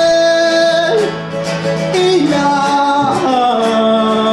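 A man singing live with an acoustic guitar, holding long notes that step down in pitch over the guitar.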